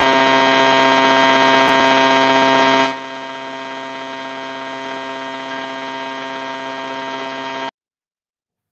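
A loud, steady electronic buzz, one low hum with many overtones, carried over the video call's audio. It drops to a lower level about three seconds in and cuts off abruptly just before the end.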